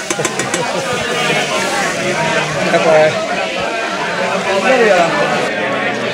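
Several people talking over one another, with laughter near the end.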